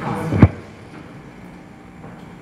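A single loud, sudden thump about half a second in, cutting across the tail of a voice, then quiet room tone in a large hall.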